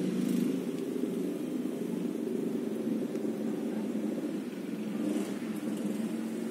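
A steady low rumble, with a few faint clicks near the end.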